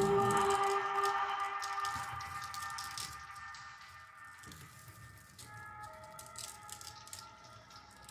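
Grand piano strings played from inside the instrument, ringing on in sustained tones that die away slowly from loud to faint. The lowest tone stops about two seconds in, and a few quiet higher tones come in past the halfway point.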